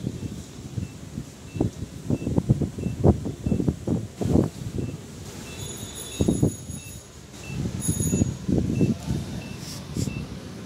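A battery-operated kids' ride-on SUV, switched on, gives a short electronic beep about twice a second. Irregular low thumps and knocks are louder than the beeps, and a few higher electronic tones join from about the middle.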